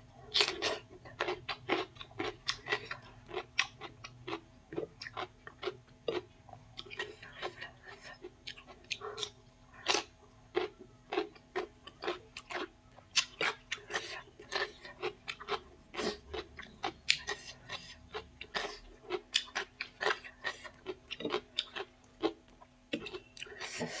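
Close-up chewing of a crisp raw cucumber slice: a steady run of sharp, crunchy bites and chews, a few each second.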